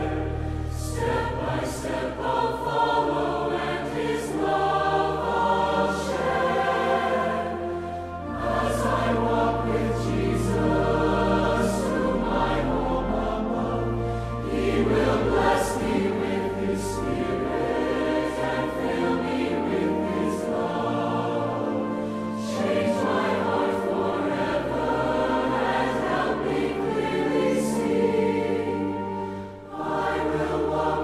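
Large mixed choir of men's and women's voices singing a hymn in harmony, with sustained low accompaniment notes beneath that change every few seconds. The singing eases briefly about eight seconds in and again just before the end, between phrases.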